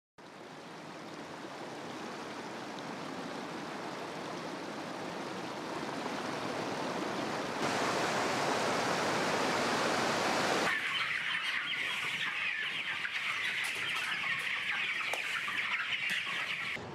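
Rushing stream water, a steady hiss that fades in and grows louder, stepping up about 7–8 seconds in. About 11 seconds in it cuts to a dense chorus of young broiler chickens cheeping in a poultry house.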